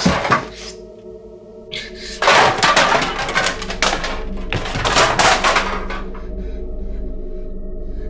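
Empty aluminium drink cans clattering and knocking together in three bursts, the longest about two seconds, over a steady, low music score.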